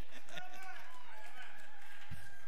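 A man laughing, with voices in the hall; a faint held tone comes in about a second in.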